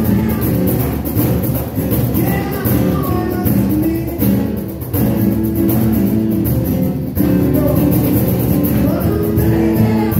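Live acoustic-guitar music: a steel-string acoustic guitar strummed, accompanied by a conga drum played by hand, with a man singing.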